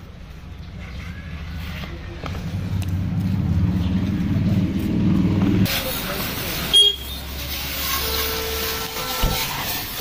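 A low engine-like hum that grows steadily louder and cuts off abruptly; then a steady hiss of water spraying from a washing hose onto a motorcycle, with a sharp click and a short horn-like tone.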